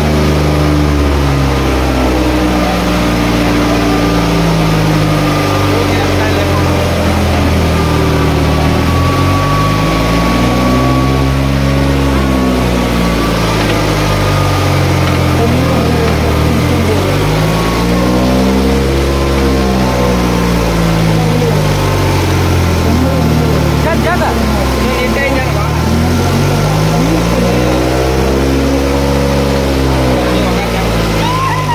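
Tractor diesel engines running loud, revving up and dropping back several times in slow swells, with a crowd's voices mixed in.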